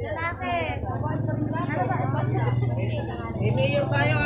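People talking over the steady low hum of a running vehicle engine, which grows stronger about a second in.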